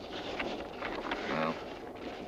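A man's brief spoken words over a steady low background rumble.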